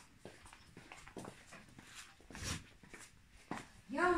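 Faint footsteps on a tiled floor: a handful of uneven steps, one louder about two and a half seconds in.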